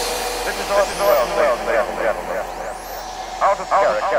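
Breakdown of an acid tekno track with no kick drum or bass: a sampled voice over a steady wash of noise, with a high rising sweep about halfway through.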